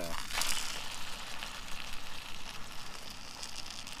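Chicken in olive oil sizzling and crackling inside a hot foil packet, with the foil rustling as a fork picks at the pieces.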